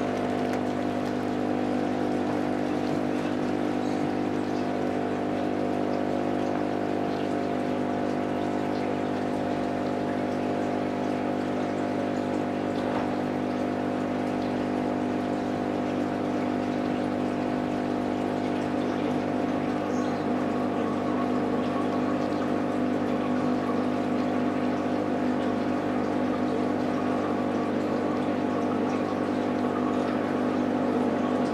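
Aquarium aeration running steadily: air bubbling up from an airstone in the water over the constant hum of the air pump.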